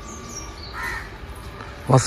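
Birds calling: a few short, high calls that drop in pitch, then a lower, harsher call about a second in.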